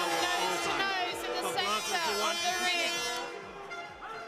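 A voice speaking over music with sustained tones, both fairly loud, dropping slightly near the end.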